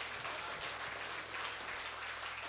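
Audience applauding, fairly light clapping, over a steady low electrical hum from the stage sound system.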